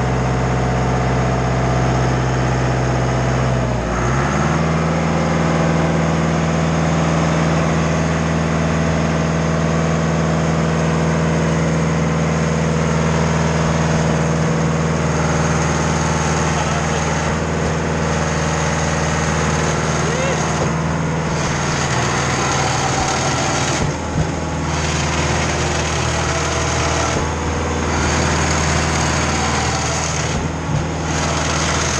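Deutz diesel engine of a Schwing WP750-15 concrete pump trailer running steadily. About four seconds in its speed steps up to a higher, steady pitch and holds there.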